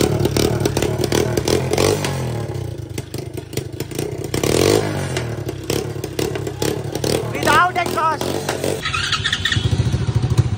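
A 125cc dirt bike's small single-cylinder engine running with its exhaust removed, revved up a few times.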